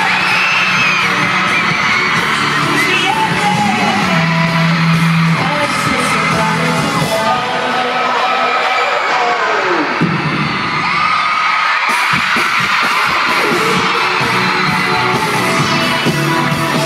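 Live pop music in an arena, with a singer over the band and a crowd of fans screaming and cheering loudly throughout. The bass drops out for a few seconds in the middle and comes back.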